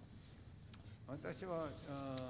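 Faint room tone for about a second, then a person speaking from about a second in.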